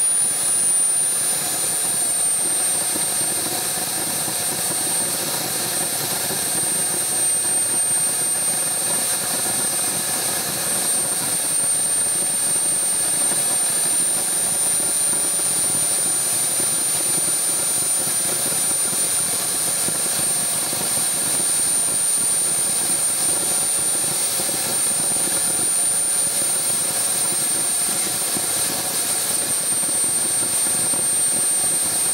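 Small RC turbine jet engine running at idle: a steady rush of noise with a high-pitched whine that dips slightly in pitch about a second in, then holds steady.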